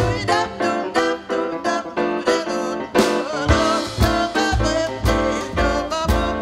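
Live jazz band playing an instrumental break of a swing tune: grand piano, bass and drum kit, with a horn line over them.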